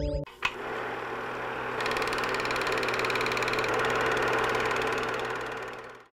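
Film projector sound effect: a steady whir with a fast, even mechanical clatter, fading out near the end.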